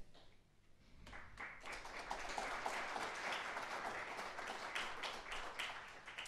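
Audience applauding, faint, starting about a second in and dying away near the end.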